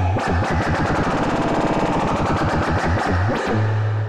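Aalto CM software synthesizer playing a crazy FX transition. A low sine tone breaks into a fast, stuttering, buzzing texture as a high-rate LFO modulates the sound, then settles back to the plain low sine tone near the end.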